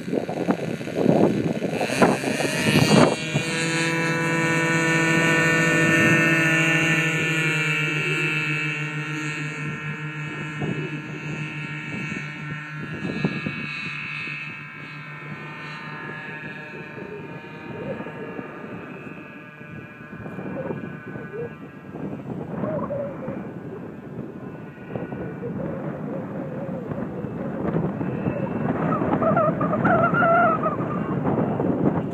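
Twin K&B .61 two-stroke glow engines of a large RC C-27 model running at full throttle for the takeoff: a steady high buzz that starts about three seconds in and fades over the next dozen seconds as the plane climbs away.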